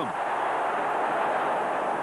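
Football stadium crowd cheering a goal, a steady wash of many voices with no single voice standing out.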